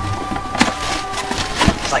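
Cardboard box being opened by hand and packing paper rustling, with a few sharp knocks and crinkles about half a second in and again near the end.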